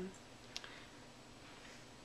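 A single short click about half a second in, over quiet room tone.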